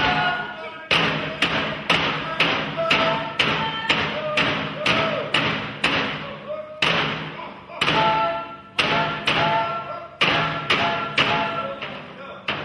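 Alaska Native frame drums beaten together in a steady beat of about three strikes a second, with a group singing a chant over them. The drumming pauses briefly twice.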